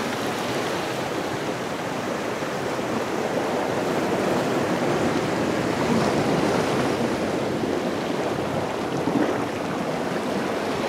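Ocean surf washing over a lava-rock shore: a steady rushing noise that swells slightly toward the middle.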